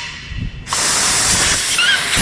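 Pressurized air hissing out of the drain (vent) hole of a frost-free yard hydrant as its valve is opened fully; the hiss starts suddenly about two-thirds of a second in and holds steady. The packing inside is failing to seal the drain hole, so this is a faulty hydrant that leaks when open.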